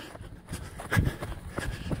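A runner's footsteps on a soft dirt path strewn with leaves and grass, a series of muffled thuds on cushioning ground.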